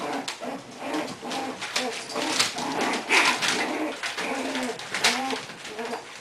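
English bulldog puppies play-fighting, giving many short pitched whines and grunts in a row, mixed with scuffling and clicks on the tile floor.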